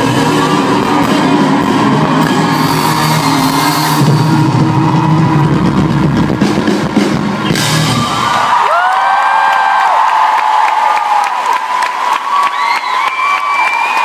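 A live band plays the closing bars of a song, loud and close, and stops abruptly a little past halfway. The audience then cheers and screams, with high-pitched shrieks rising and falling.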